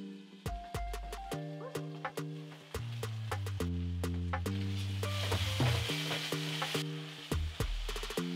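Background music with a bass line and steady beat, over the sizzle of a tomato, onion and spice base frying in a pot; the sizzle is clearest about five to seven seconds in.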